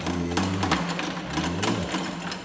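Coin-operated kiddie horse ride running, a steady low mechanical hum with repeated clicks and rattles from the ride.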